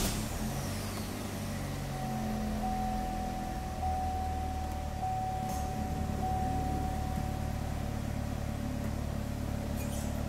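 Chevrolet Malibu engine just started, catching right at the start and then idling steadily. A steady high tone sounds from about two seconds in until near the end.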